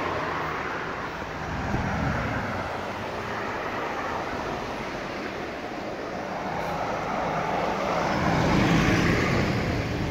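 Street traffic passing, a steady mix of car engines and tyres on the road. It swells to its loudest about eight to nine seconds in as a double-decker coach drives past close by, its engine deep under the tyre noise.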